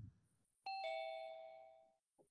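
An electronic two-note notification chime, a quick falling ding-dong about half a second in, ringing out and fading over about a second.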